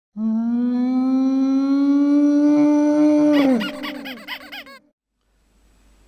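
A channel-intro sound effect: one long, loud, held tone that rises slightly in pitch, then breaks into a wavering fall and fades out about three and a half seconds in.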